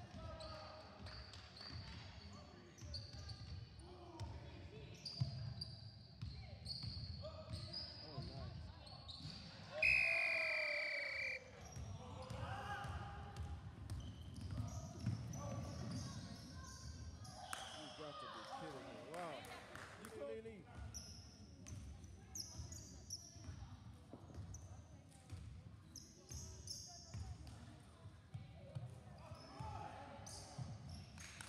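A basketball bouncing and dribbling on a sports hall's wooden floor, with short squeaks of sneakers and players' indistinct shouts. A loud held squeal or shout comes about ten seconds in.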